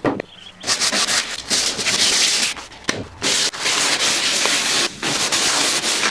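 Sandpaper rubbing on wood in a run of strokes, each a second or two long, with short pauses between them.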